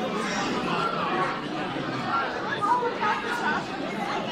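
A crowd of people talking at once: many overlapping conversations in a busy room.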